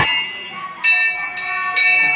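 Metal temple bell struck three times, about a second apart, each strike ringing on with a clear, sustained tone.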